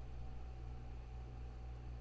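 Faint room tone: a steady low hum under a soft hiss, with nothing else happening.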